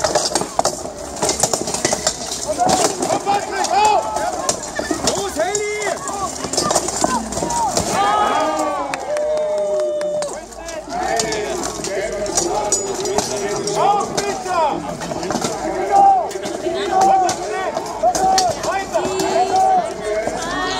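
Spectators shouting and cheering over a full-contact armoured fight, with repeated sharp clanks and knocks of steel weapons striking plate armour and shields.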